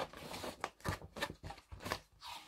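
Paper pages of a large picture book rustling and crackling in the hands as the book is turned sideways: a string of short crinkles.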